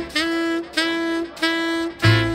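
Saxophone in a blues band recording playing three repeated notes on the same pitch, each scooped up into and held about half a second, with short gaps between. Bass and drums drop out under them.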